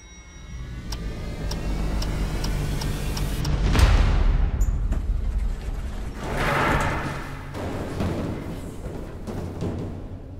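Dramatic trailer score: a low, rumbling build with a ticking pulse about two beats a second. Two big swelling hits come, the loudest about four seconds in and another near seven seconds.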